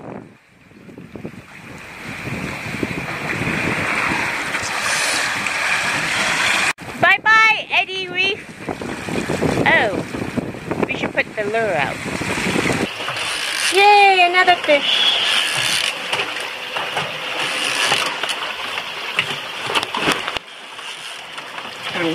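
Wind and water rushing past a sailboat under way at sea, with short excited voice calls a few times, around seven and fourteen seconds in.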